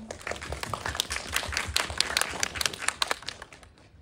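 Audience applause: many hands clapping together, thinning out and fading in the last second.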